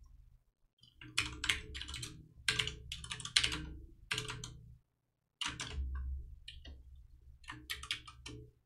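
Typing on a computer keyboard: quick runs of keystrokes, a short pause about five seconds in, then another run.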